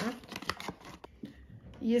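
Small paperboard box being opened by hand: a sharp snap at the start, then a few light taps and scrapes of cardboard as the contents are pulled out.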